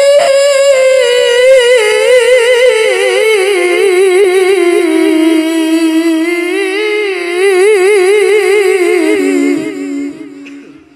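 A man's melodic Quran recitation through a microphone: one long phrase held with a fast, even vibrato, its pitch sinking slowly. It trails off near the end.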